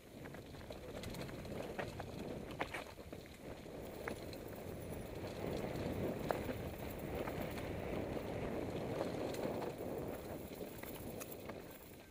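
Mountain bike riding down a dirt forest trail: a steady rumble of tyres rolling over dirt and stones, with scattered clicks and rattles from the bike. It eases off near the end as the bike comes onto smooth pavement.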